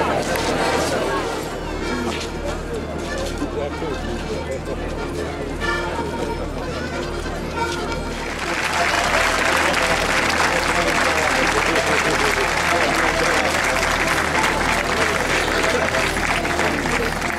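Traditional Sardinian folk music playing for a ring dance, with crowd voices behind it. About eight seconds in, the music becomes louder and fuller.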